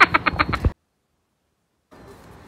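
A burst of rapid, pulsing laughter that cuts off abruptly under a second in, then a second of dead silence at an edit, followed by faint outdoor background noise.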